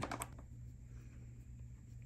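A few faint small clicks as a precision screwdriver bit engages a tiny screw in a metal frame, just after the start, then quiet with a low steady hum.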